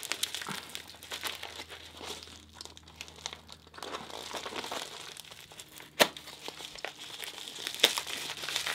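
Padded mailer with bubble-wrap lining crinkling and rustling as it is handled and cut open with a utility knife. A single sharp click about six seconds in.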